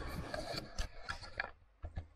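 Handling noise from a hand-held camera being moved: rubbing and scraping with several sharp clicks, dying away after about a second and a half.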